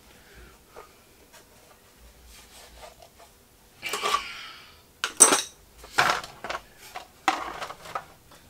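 Metal sockets clinking and rattling in a plastic Irwin bolt-extractor case as it is handled and opened and a socket is taken out: a handful of sharp clinks in the second half.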